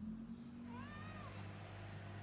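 A domestic cat meowing once: a short meow that rises and then falls in pitch, about a second in. A steady low hum runs underneath.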